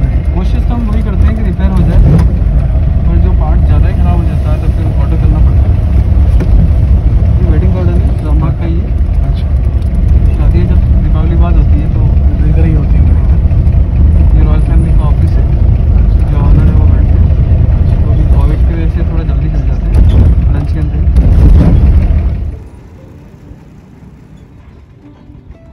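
Inside the cabin of a vintage car on the move: a loud, low rumble of engine and road noise, with voices talking over it. It cuts off suddenly about a second and a half before the end.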